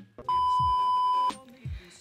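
Steady single-pitch test-tone beep of the kind played with a TV colour-bars test pattern. It lasts about a second and cuts off sharply.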